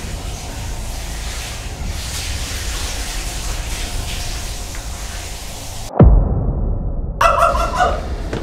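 A steady rushing noise with a low rumble, then a sudden deep boom about six seconds in that falls sharply in pitch: a dramatic sound-effect hit in an edited horror intro.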